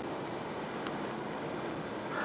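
Steady road and wind noise inside a car's cabin while driving on a motorway, with one faint tick just under a second in.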